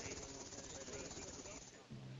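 Faint steady hiss with indistinct, distant voices underneath.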